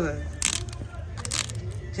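Small scissors snipping kite line wound on a spool: two short snips about a second apart.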